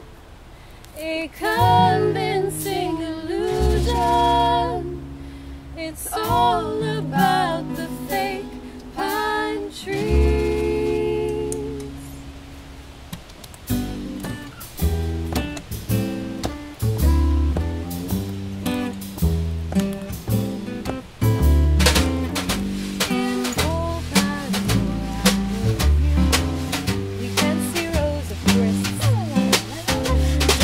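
Live band music: acoustic guitar, upright bass and a small drum kit, with a melodic lead line over a sparse first half. About halfway through, the full band comes in with a steady, even beat.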